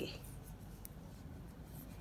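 Faint scratching and a few light clicks of metal knitting needles working fabric-strip yarn as stitches are knitted off.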